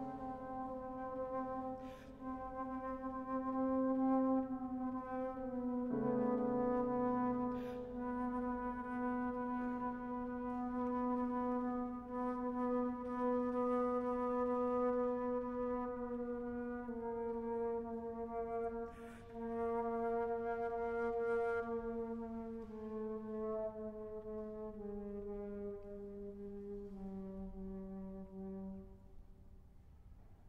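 Flute and piano playing slow, long-held notes of contemporary classical music, the sustained sound stepping down in pitch every few seconds and fading near the end.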